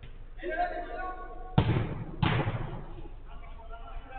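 Two sharp thuds of a football being struck on a five-a-side pitch, about two-thirds of a second apart, each with a short ringing tail.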